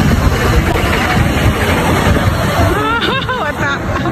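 Babble of voices over a low, steady rumble, with one wavering voice-like cry about three seconds in.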